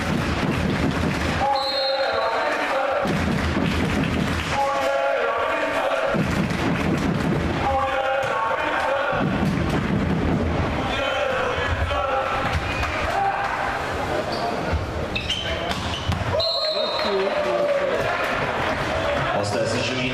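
Home supporters' section beating several bass drums in a steady rhythm, taking turns every few seconds with the crowd chanting in unison.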